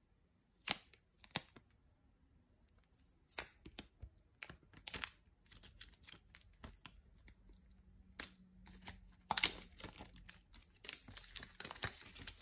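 Thin protective plastic film being peeled off a small laptop charger by hand: faint, irregular sharp crackles and rustles, with a louder run of crackling about nine and a half seconds in.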